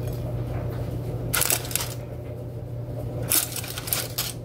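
Crisp cooked bacon strips crackling as they are handled and laid onto a plate, in two short bursts, about a second and a half in and again near the end, over a steady low hum.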